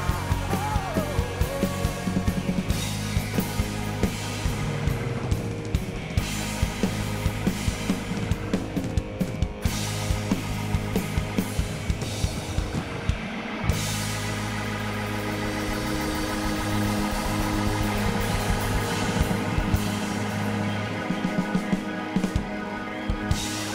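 Live rock band playing an instrumental passage: drum kit beating steadily over bass and guitar. About two-thirds of the way in the cymbal wash thins and the band settles into a held, sustained groove.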